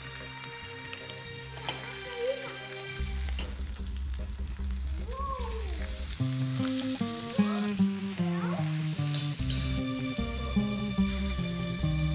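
Lamb shoulder sizzling as it fries in a pan, under background music whose notes step up and down more busily in the second half.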